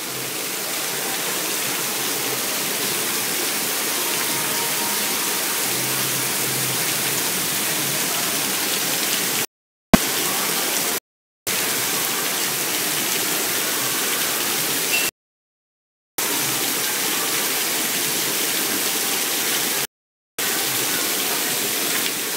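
Heavy tropical rain pouring down in a steady, dense hiss. It is cut by four brief, abrupt silent gaps, the longest about a second.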